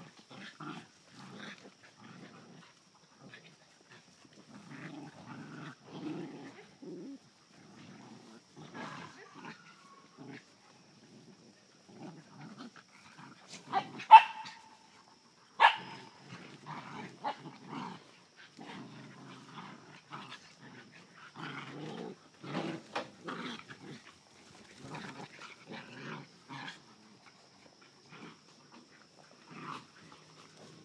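Puppies play-fighting, with short bursts of low growling on and off throughout. About halfway through come two sharp barks a second and a half apart, the loudest sounds.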